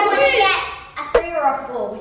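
Children's voices, with one brief sharp click a little over a second in.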